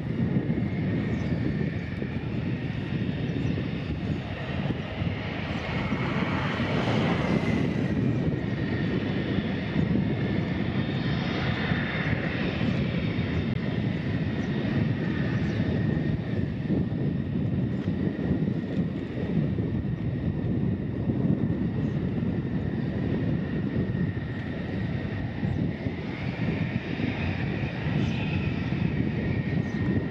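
F-16 fighter jets taxiing, their jet engines running at taxi power. It is a steady rumble with a high whine over it, and it swells a few times as each jet passes.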